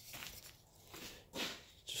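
Faint handling noises: a few soft scuffs and rustles as a person moves and handles a wooden beehive frame part at a table saw that is switched off.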